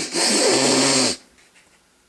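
A person sniffing hard through the nose in one long, noisy sniff of about a second, with a hum from the voice underneath.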